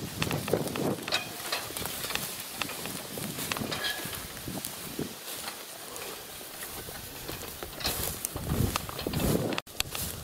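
Footsteps and rustling through tall grass, with scattered small clicks and knocks and no steady rhythm.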